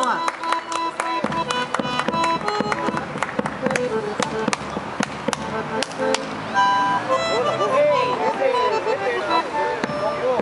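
A small Argentine folk group plays: an acoustic guitar, a bandoneón and a bombo legüero drum struck with sticks. There are held notes and sharp regular strikes, and voices come in over the playing in the last few seconds.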